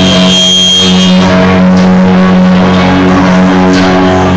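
Live rock band playing loud: electric guitar and bass guitar holding sustained, ringing notes.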